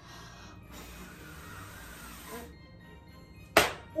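A person blowing out a row of tealight candles: one long breath of about two seconds, then a single sharp slap near the end.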